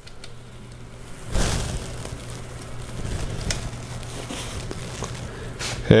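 Rustling, crackling handling noise from fingers working a small plastic cable cap and cable at a bicycle dropper post's head, starting about a second in, over a steady low hum.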